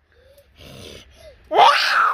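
A boy's loud, rough roar-like cry, imitating a tiger, starting about one and a half seconds in after a short quiet stretch with a faint breath.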